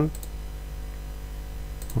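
Computer mouse clicking: a couple of faint clicks, one just after the start and one near the end, over a steady low hum.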